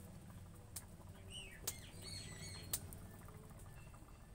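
Small birds chirping several times, with three sharp pops from a wood fire burning under a boiling wok, over a low steady rumble.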